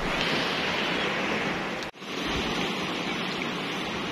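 Sea surf breaking and washing over rocks along the shore: a steady rush of waves, broken by a brief gap about halfway through.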